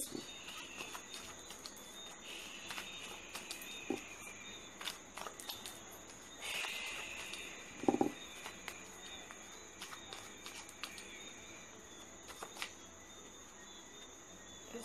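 A deck of playing cards being shuffled by hand: faint, irregular clicks and short soft slides of cards, over a steady high-pitched background hiss.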